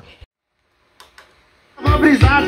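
Music starts near the end, playing loud with a strong bass through a homemade three-way speaker box driven by a small 400 W RMS amplifier module. Before it, near silence with a couple of faint clicks.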